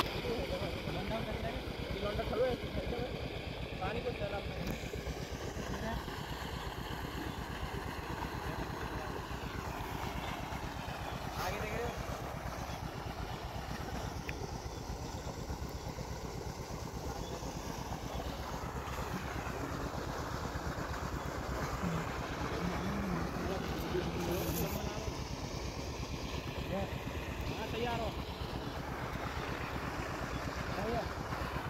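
8 HP diesel pump-set engine running steadily in the distance, an even low pulsing under a haze of noise, while it pumps water into the field.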